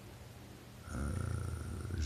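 Faint room hiss, then about a second in a low, drawn-out nasal sound from a man's voice, a held hum rather than words.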